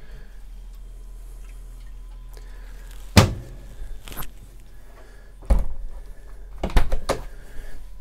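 The plastic freezer flap and door of a small single-door camper fridge being shut by hand: a few sharp knocks and clacks, the loudest about three seconds in, then more near the end. A low steady hum sits underneath.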